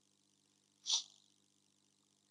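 A single short breath noise from a person, a quick sniff-like rush of air, about a second in, over a faint steady hum.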